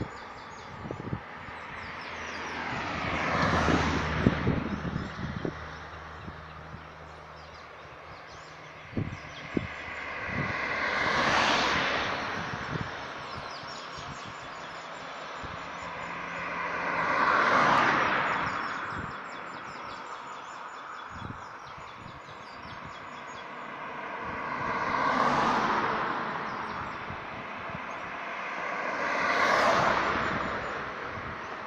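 Cars driving past on a road one after another, about five in all, each swelling up and fading away as it goes by. A few short knocks come through near the start and again around nine seconds in.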